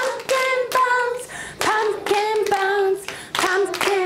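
A class of young children singing a short chorus together in unison while clapping their hands in rhythm as body percussion.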